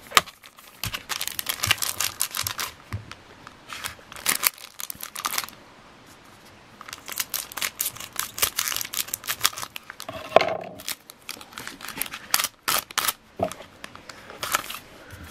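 Pokémon Bandit Ring booster pack wrappers crinkling in bursts as they are handled and cut open with scissors, with a quieter pause about six seconds in.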